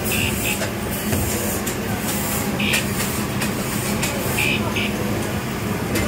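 Steady din of a busy street-food stall, with background voices and a constant low hum, under the brush-and-scrape of marinade being dabbed onto a whole tuna grilling over charcoal in a wire basket. A few short high beeps stand out near the start, in the middle and later on.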